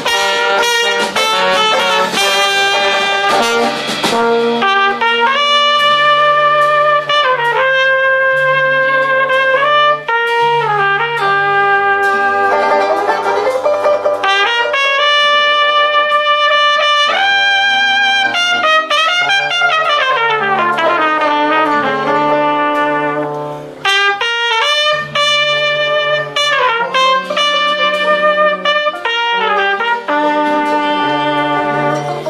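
Live New Orleans-style Dixieland jazz: trumpet and trombone playing long held notes over a low bass line. About two-thirds of the way through comes one long falling glide in pitch.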